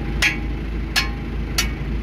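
Tractor engine idling with a steady low rumble, with three sharp metallic clinks, each with a short ring, as the hay cutter's PTO driveshaft and hitch parts are handled.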